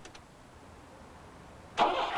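A car engine being cranked by its starter and failing to catch: a couple of sharp clicks at the start, a short pause, then another loud cranking attempt begins suddenly near the end.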